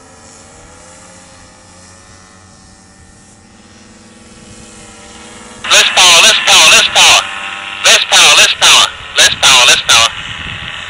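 Paramotor engine and propeller heard from the ground as a steady drone, its pitch wavering slightly. About six seconds in, loud shouted speech breaks in over it.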